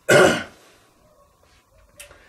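A man clears his throat once: a single short, harsh burst about half a second long at the start.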